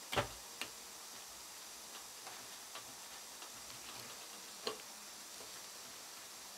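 Small sharp clicks of steel dental hand instruments, a periosteal elevator and a second pointed tool, tapping against each other and the plastic jaw model while the gum flap is lifted. The loudest click comes just after the start, another follows half a second later and one more near the end, with faint ticks between over a low hiss.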